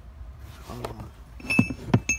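Small metal tools being handled in a car trunk's carpeted storage well, with a few sharp metallic clinks in the second half.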